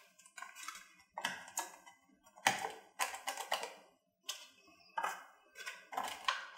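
Plastic socket blocker being handled and pressed onto a wall outlet: a string of about ten irregular small plastic clicks and rustles.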